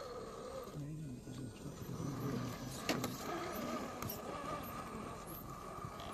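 Scale RC crawler's brushless electric motor and gear drivetrain whining steadily as it crawls up a bark-covered mound, with a few sharp clicks about three and four seconds in. The whine fades near the end.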